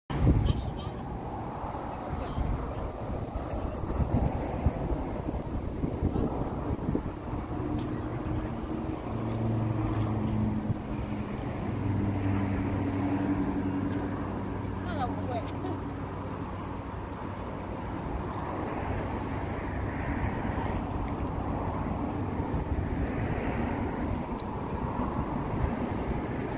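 A vehicle engine humming at a steady pitch from about eight to seventeen seconds, over a continuous low rumble of outdoor traffic or wind noise.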